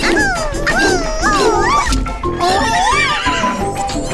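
Cartoon horse whinnies, a run of wavering calls rising and falling in pitch, over steady background music.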